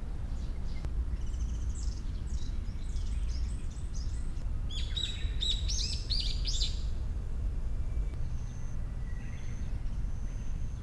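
Small birds chirping in quick runs of short high notes, busiest and loudest about five to seven seconds in, with a few thin held notes near the end. A steady low background rumble runs underneath.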